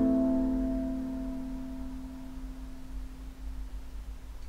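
The last strummed chord of a Mr. Dinosaur baritone Wolfelele ukulele, tuned to open G (DGBD), ringing out and slowly fading away over about three seconds.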